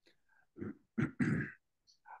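A man clearing his throat: one short sound, then two more close together about a second in.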